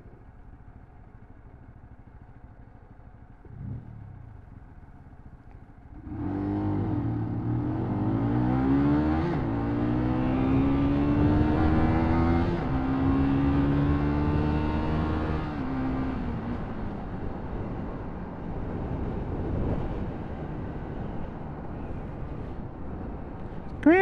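Motorcycle engine idling quietly at a standstill, then about six seconds in pulling away hard, its pitch climbing and dropping back three times as it changes up through the gears. After that it settles into a steady cruise under road and wind noise.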